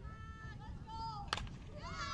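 A single sharp crack of a softball bat striking the pitched ball, about a second and a third in, over voices calling out across the field.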